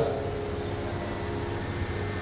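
Steady background hum and hiss of a hall picked up through a microphone and sound system, with a few faint steady tones.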